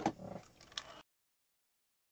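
Near silence: a few faint clicks in the first second, then the sound drops out to dead silence.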